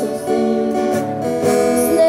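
Acoustic guitar strummed in chords, changing chord several times, with no singing over it.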